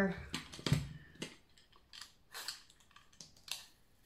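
Handling noise as an apple and a peeler are picked up from a table: a dull thump a little under a second in, then scattered light knocks and brief scrapes.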